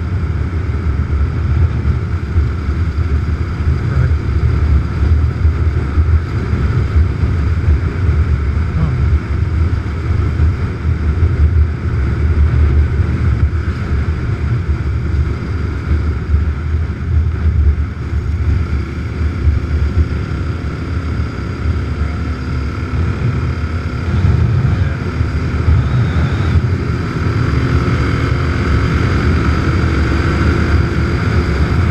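Motorcycle riding at steady road speed: a continuous engine drone mixed with heavy wind rumble on the bike-mounted microphone, the engine note coming through more clearly in the last few seconds.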